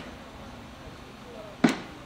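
Quiet outdoor background of a crowd standing silent, broken by one short, sharp knock near the end.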